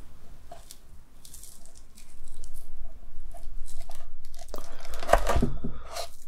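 A small cleaver-style knife cutting down through an Oreo cream tart, its crisp chocolate tart shell crackling and crunching. The crackling is loudest about five seconds in.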